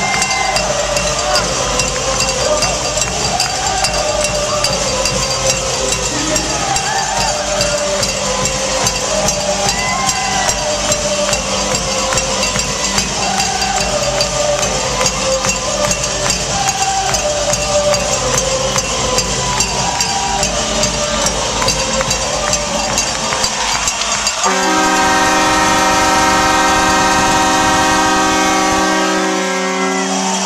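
Crowd noise in an ice hockey arena, many voices talking and calling at once. About 25 seconds in, a loud multi-tone arena horn sounds steadily for about five seconds, then stops.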